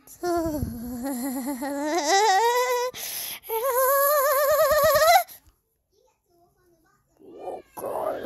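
A child's voice making two long, wobbly, sung-like vocal noises, each rising in pitch, with a short rushing noise between them.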